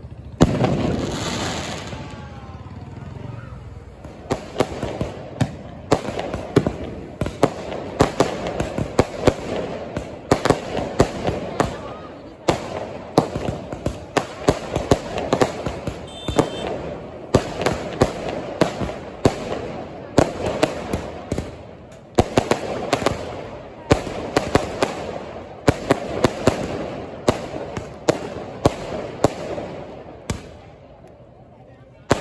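Aerial fireworks (sky shots) going off: one loud bang about half a second in, then from about four seconds a rapid, continuous string of sharp cracking bangs, several a second, coming in clusters.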